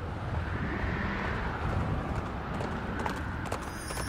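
Sound effect of a horse galloping, a dense rumble of hoofbeats that grows a little louder as it approaches.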